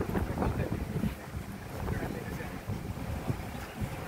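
Wind rushing and buffeting the microphone on the open upper deck of a moving bus, with a low, uneven rumble.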